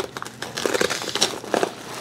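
Velcro hook-and-loop fastener ripping apart and nylon fabric rustling as a plastic holster, fixed with Velcro inside a chest rig's map pocket, is pulled free. It comes as a series of short crackling rasps.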